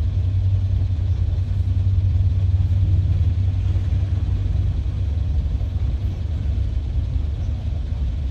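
Steady low rumble of an idling vehicle engine, heard from inside the car's cabin.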